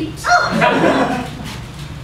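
A sharp, high-pitched vocal yelp near the start, then an audience laughing, the laughter thinning out toward the end.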